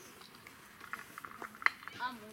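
Quiet outdoor background with a few short clicks in the second second, one sharp click the loudest.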